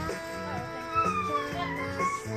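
Music playing on a radio: held notes under a melody line that slides up and down in pitch.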